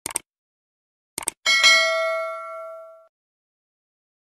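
Subscribe-button sound effect: two quick clicks, two more about a second later, then a bell ding that rings out and fades over about a second and a half.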